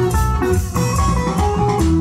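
Live band dance music: a guitar melody of short notes over bass and drums with a steady beat.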